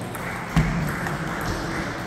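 Table tennis ball being hit with bats and bouncing on the table during a rally, with a sharp crack about half a second in and fainter clicks after.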